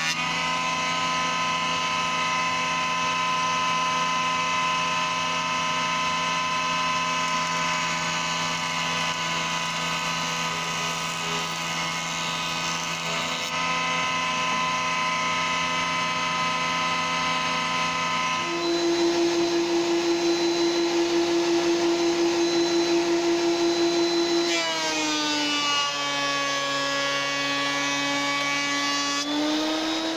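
Electric surface planer running with a steady whine while beech boards are fed across the cutter block. About two-thirds of the way in, a strong pulsing tone joins it, and near the end the pitch drops twice, as the motor is loaded.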